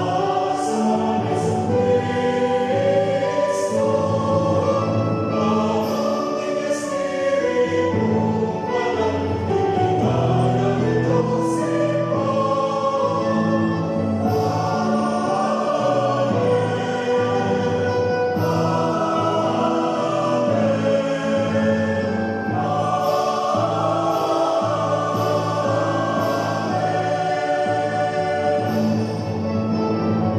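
Mixed choir of men's and women's voices singing a church hymn together, accompanied on keyboard.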